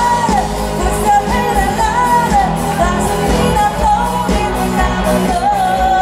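Live rock band playing electric guitars, keyboard and drums while a woman sings the lead vocal through the PA, her melody rising and falling over a steady beat.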